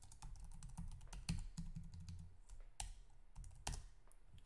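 Computer keyboard being typed, a quick, irregular run of faint key clicks with a few louder strokes.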